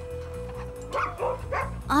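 A dog giving short yips, one about a second in and more near the end, over background music with a note held through the first second.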